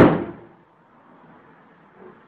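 A single loud bang right at the start, dying away over about half a second.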